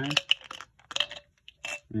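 Small fishing sinkers and hooks being tipped back into a small plastic bottle: a few separate sharp clicks and rattles of metal on plastic.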